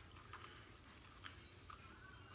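Near silence: room tone with a few faint, short clicks, like small items being handled.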